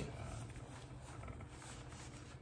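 Faint rustling of a fabric hood and over-ear headphones being handled and pulled on, over a steady low room hum.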